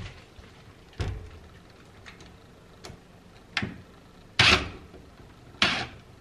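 A handful of short knocks and clunks, about a second apart, as a metal hook and a cordless drill are worked against wooden wall panelling to fit the hook; the loudest comes about four and a half seconds in.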